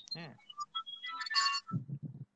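A short electronic ringtone-like melody of several high tones, thickening into a brief chord about a second and a half in. It sits between snatches of speech.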